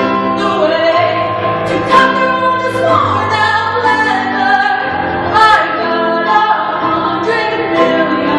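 A solo voice singing long held notes with vibrato over grand piano accompaniment.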